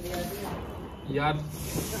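A lit firecracker hissing steadily, starting about halfway through.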